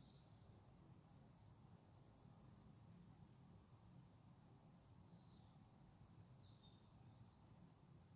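Near silence with a low room hum and a few faint, short, high bird chirps: a cluster about two to three seconds in, and a couple more later.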